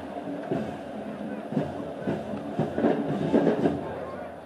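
Stadium crowd noise with band music in the background: broken sustained low brass-like notes and irregular drum-like hits.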